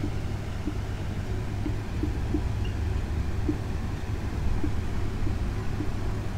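A steady low rumble of background noise, with faint soft ticks about once a second.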